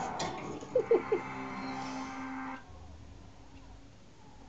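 Pet budgerigar chattering, with three short, loud sliding notes about a second in and a held low note after them; it all stops suddenly at about two and a half seconds.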